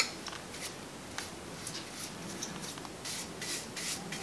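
Linseed oil being rubbed onto the wooden spokes of a Model T wheel: a series of short, scratchy rubbing strokes, strongest near the end, with a sharp click at the very start.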